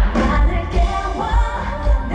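Live K-pop concert performance: a woman singing into a handheld microphone over an amplified pop backing track. A heavy kick drum beat comes in right at the start and pulses steadily.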